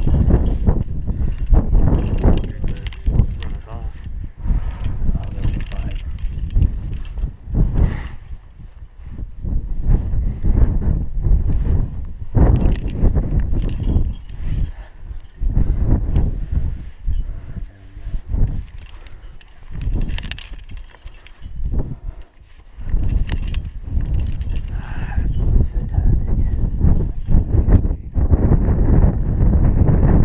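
Wind buffeting the microphone in gusts, with rustling and knocks of a climbing rope being taken in hand over hand at a belay anchor.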